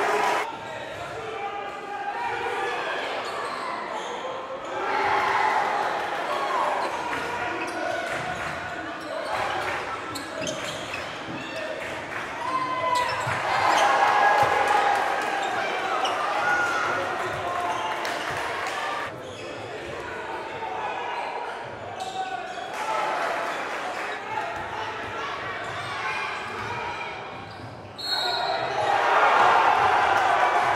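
Live game sound in a gym: a basketball dribbling on the hardwood court amid players' and spectators' voices, with the crowd getting louder near the end.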